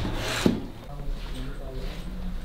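Cardboard drone box being handled: a scraping rub against it, then a sharp knock about half a second in, followed by quieter handling.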